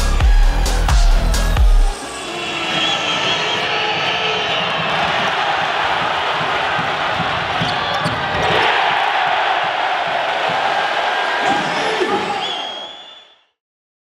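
Electronic music with a heavy bass beat cuts off about two seconds in. Live basketball arena sound follows: crowd noise and ball bounces on the court, with the crowd getting louder about eight and a half seconds in. The sound fades out shortly before the end.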